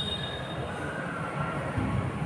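Chalk on a blackboard giving a thin high squeal that fades out about half a second in, then a lower squeak around the middle, over a low room rumble.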